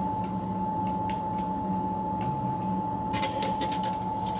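A pellet-stove exhaust fan running steadily on a homemade downdraft gasification boiler, a constant hum with a high whine, drawing air through the freshly lit burner as it starts firing. A few faint ticks about three seconds in.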